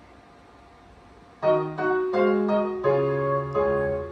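Quiet room tone, then about a second and a half in the piano introduction of a recorded children's phonics song starts suddenly, playing a run of distinct notes and chords.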